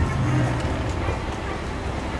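Low steady rumble of an inclined airport moving walkway carrying a luggage trolley, a little louder for the first half second as the trolley rolls on, over the hum of a busy terminal hall.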